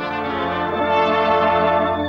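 Orchestral cartoon underscore led by brass, holding long, slightly wavering notes over a steady low tone.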